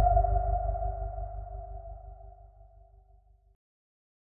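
The tail of a logo sound effect: a ringing tone over a low rumble, fading steadily and ending about three and a half seconds in.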